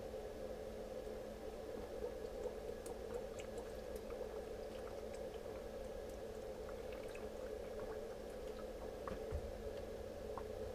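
A person drinking water from a bottle in one long go, with quiet gulps and swallows as the bottle is tipped up.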